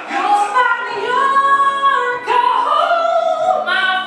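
A woman singing a show tune with long held notes, backed by a pit orchestra.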